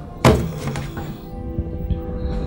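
Background film music with a single heavy thunk about a quarter second in that rings briefly.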